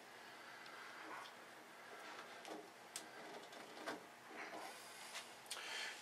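Faint handling noise: a few quiet clicks and knocks as a hand works a brass valve and garden-hose fitting on boiler piping, over a low room hiss.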